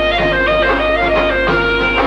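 Aromanian (Vlach) polyphonic folk song: male voices, a melody moving over held notes. A steady low hum runs underneath.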